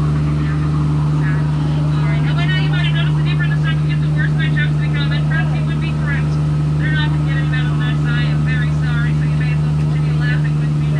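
Jungle Cruise tour boat's engine running with a steady low hum as the boat cruises along the river. Rapid high chirping calls, in repeated bursts, sound over it for most of the stretch.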